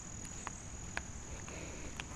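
Quiet outdoor background with a steady high-pitched insect drone and a few faint scattered ticks.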